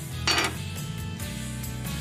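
Background music, with a brief scrape of a serving utensil against a plate about a third of a second in.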